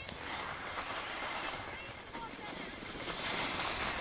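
Skis hissing over packed snow on a moving descent, with wind rushing over the microphone.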